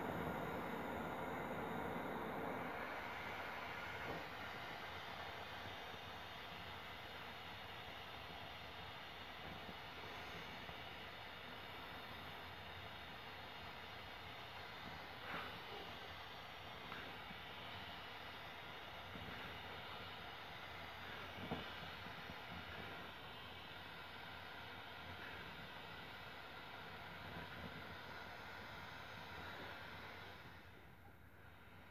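Small handheld torch flame hissing steadily as it heats the cut end of a nylon rope to fuse the fibres. It is louder for the first few seconds, then steadier and quieter, with a few faint ticks.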